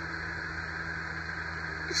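Steady room tone: a low hum under an even hiss, with no distinct events.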